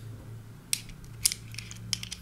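Three light clicks about half a second apart as a Lost Vape Ursa Quest metal vape mod is handled.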